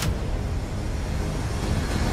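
A low, steady rumble with a faint hiss over it.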